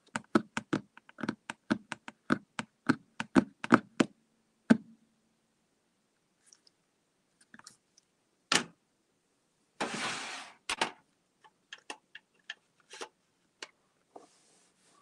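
A pen point tapping quickly on paper over a hard desk, a run of sharp taps for the first four seconds or so, then scattered taps, with a short scratchy rub of pen or hand on the paper about ten seconds in.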